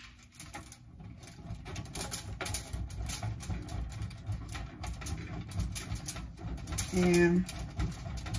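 A block of cheese being grated on a stainless-steel box grater, repeated scraping strokes about two or three a second.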